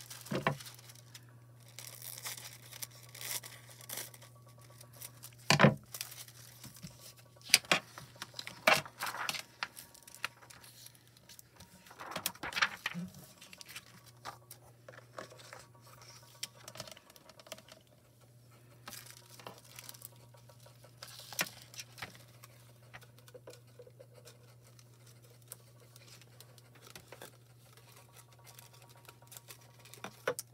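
Sheets of heat-transfer foil and their clear plastic carriers crinkling and crackling as they are handled and peeled away from foiled cardstock, in irregular bursts that are busiest and loudest in the first half and sparser later. A steady low hum runs underneath.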